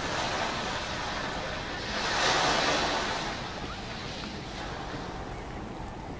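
Steady rushing outdoor noise that swells louder about two seconds in and fades again about a second later.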